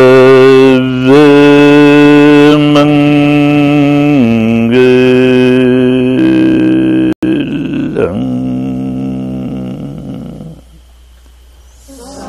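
A man's voice chanting in long, held notes that step to a new pitch a few times, the closing Pali chant of a Vipassana discourse; it fades out near the end.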